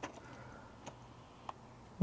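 A few faint, sharp clicks, three in all, as hands handle the test leads and clips on a small circuit board; the last, about one and a half seconds in, has a brief short tone.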